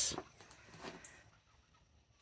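Faint clucking of chickens, a few short clucks in the first second, then near silence.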